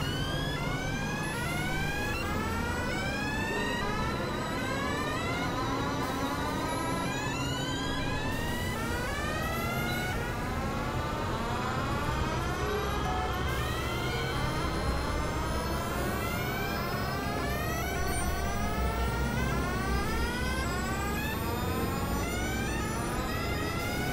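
Experimental synthesizer music: many overlapping tones sweeping upward in pitch, several a second, over a low steady drone.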